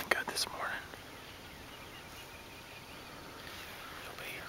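A man whispering faintly over a low steady hiss, with a few clicks at the very start.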